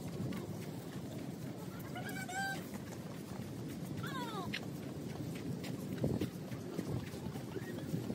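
Steady outdoor background noise of a beachfront walkway, with two short high cries: one about two seconds in, and a second, falling in pitch, about four seconds in.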